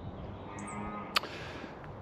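Faint farmyard background with distant animal calls, including a short high chirp about half a second in, and a single sharp click just after one second.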